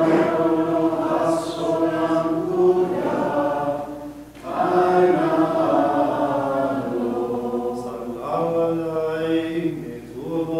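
Maronite liturgical chant sung in long, held melodic phrases, with a short break for breath about four seconds in and another dip near the end.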